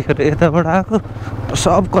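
A person talking over the steady low hum of a motorcycle engine running beneath the voice, with the voice pausing briefly about a second in.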